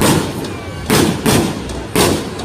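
Fireworks exploding: four loud bangs, each trailing off in a rolling echo.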